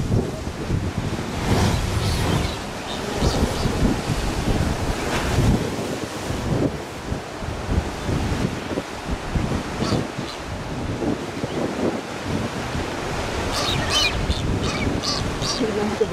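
Wind buffeting the microphone over a steady wash of sea surf, with a quick run of short high-pitched sounds near the end.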